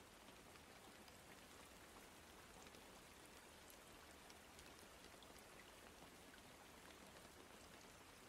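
Faint, steady rain sound bed, an even hiss with scattered tiny drop ticks.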